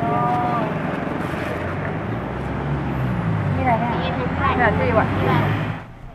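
Busy street noise with a motor vehicle engine running steadily underneath, and a person's voice speaking briefly near the start and again about four seconds in.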